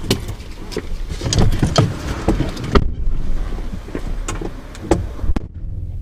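People climbing out of a parked pickup truck's cab: the door opening, clothing rustling against the seats, and many sharp clicks and knocks over a low rumble.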